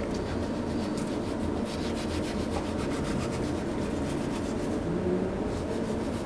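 A long sushi knife drawn through a block of raw tuna loin, making soft rubbing strokes against the flesh, over steady background noise.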